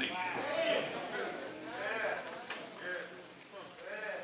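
Quiet voices: a few short, rising-and-falling spoken utterances, much softer than the preaching just before and after.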